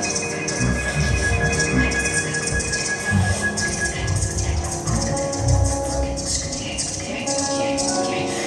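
Free-improvised experimental music: held steady tones over irregular low thuds and short noisy strokes in the high register, with a higher held tone through the first half giving way to a lower one in the second.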